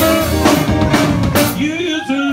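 Live band playing an up-tempo rhythm-and-blues number: two saxophones over a drum kit and keyboard, with a steady drum beat.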